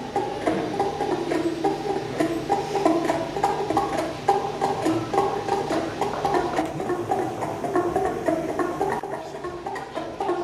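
Live psychedelic rock band music: a rapid repeated figure of short picked notes over a low held drone.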